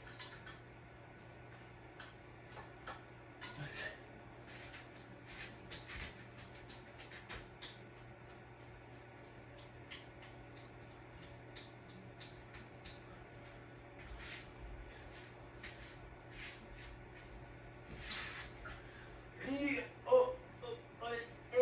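44-inch Hunter ceiling fan running, its motor giving a faint steady low hum, with scattered light clicks.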